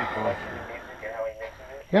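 A man's voice, talking quietly, in a short lull between louder speech.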